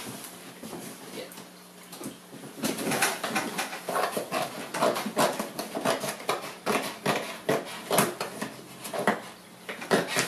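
Scissors snipping through cardboard packaging, a quick run of irregular sharp snips and crinkles from about two and a half seconds in until near the end.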